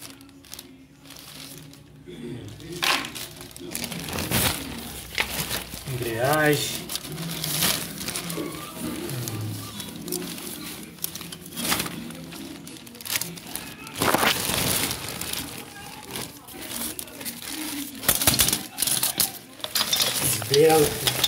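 Clear plastic bags crinkling and rustling in irregular bursts as the car parts wrapped in them are handled.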